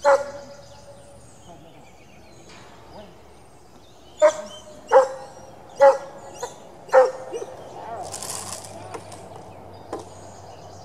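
A dog barking in single sharp barks: one right at the start, then four more about a second apart.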